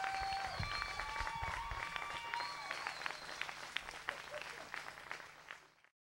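Audience applause, dense clapping with some held cheering tones over the first few seconds; it thins out and then cuts off suddenly just before the end.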